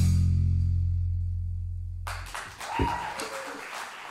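The rock band's final chord, bass and electric guitar, rings out and slowly fades. About two seconds in, audience clapping starts and carries on with a short cheer.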